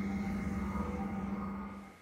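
Background music: a sustained synthesizer drone with a steady low hum under it, fading out near the end.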